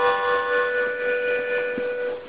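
Harmonica holding one long, steady chord as part of a slow improvisation.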